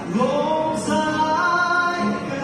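A man singing into a hand-held microphone, a new phrase starting with a rising note just after a short breath, then held notes.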